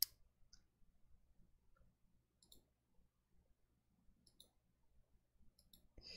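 Computer mouse clicking in near silence: one sharp click at the start, then a few faint, scattered clicks, with a small cluster near the end. The mouse is a Logitech MX Vertical wireless mouse.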